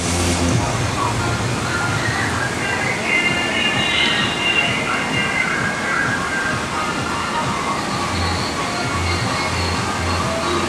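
Water-park ambience: a steady wash of running water from the water slides and pool, with distant voices and faint music.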